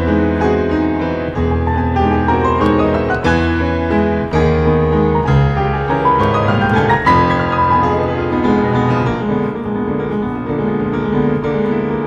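Solo piano improvisation played with both hands: held low bass notes under flowing chords and runs higher up, the upper notes thinning out in the second half.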